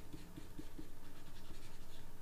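Stylus scratching across a graphics tablet in quick, repeated short strokes while skin weights are painted.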